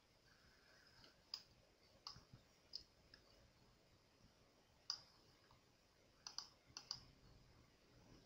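About ten faint computer mouse clicks, scattered and irregular, over a near-silent background.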